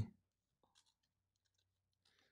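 Faint scratching of a pen nib on sketchbook paper as a word is lettered, in short strokes.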